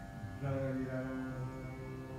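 Dhrupad vocal alap: a male voice slides up into a held note about half a second in and sustains it over a steady tanpura drone.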